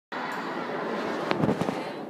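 Sports-hall ambience with a murmur of voices, and a few short knocks about a second and a half in.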